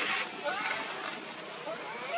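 Indistinct background voices of people talking, faint and unintelligible, over outdoor ambience.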